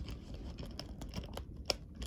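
A few small, sharp clicks and light scratching, the sound of something being handled close to the microphone, with the clearest click near the end.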